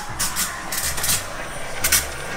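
Low hum of a small home espresso machine's pump brewing, coming and going in short stretches, with brief rubbing and clicks of the camera being carried.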